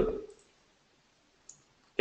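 Near silence after the voice trails off, with a single faint click about one and a half seconds in.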